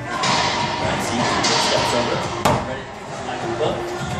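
Racquetball rally: sharp cracks of the ball struck by racquets and hitting the court walls, the loudest about two and a half seconds in.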